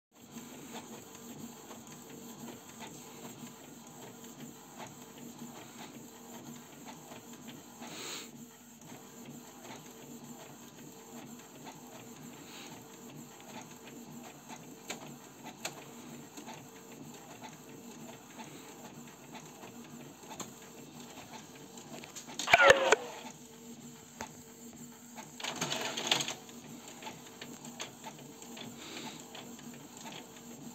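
Canon G3411 and Epson L132 ink-tank inkjet printers printing in fast mode: a steady whir of the print-head carriage and paper-feed rollers. About 22 seconds in there is a brief, louder sound that falls in pitch, and a few seconds later there is another short, louder burst.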